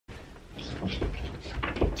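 Duvet rustling and a mattress giving dull thumps as a person climbs onto a bed on hands and knees, the loudest thump near the end.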